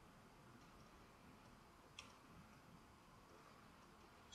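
Near silence: room tone, with one faint short click about halfway through.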